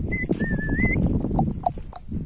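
Outdoor pasture sound: a steady low rumbling noise, with a thin wavering whistle in the first second and a few short, sharp chirps after it.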